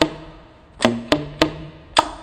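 Tenor saxophone played as a beatbox: sharp percussive pops and clicks from the horn, about five hits, set over short low bass notes that keep the groove between sung phrases.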